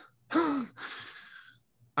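A man's sigh: a short voiced sound sliding into a breathy exhale that trails off.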